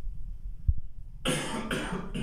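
A few quick, harsh coughs come in a burst from about a second and a quarter in, after a brief low thump.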